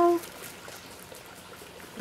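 A woman's voice trails off at the very start, then faint, steady trickling water.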